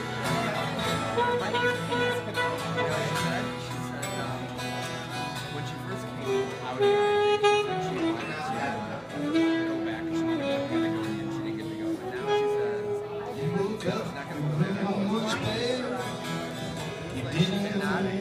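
Live saxophone playing a melody over a strummed acoustic guitar, an instrumental break with several long held sax notes in the middle.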